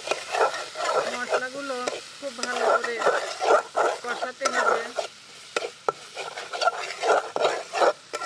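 Metal spatula scraping and stirring thick spice paste around an aluminium pot, the paste sizzling in oil, in repeated strokes about twice a second: the masala being fried until the oil separates. A short wavering pitched call sounds in the background between about one and three seconds in.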